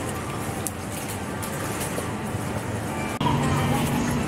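Supermarket background: a steady hum and noise. About three seconds in there is a sharp click, and after it a low hum is louder.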